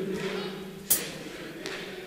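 Voices singing unaccompanied in a large hall: a held note fades away over the first second. A single sharp click follows about a second in, then a low hall background.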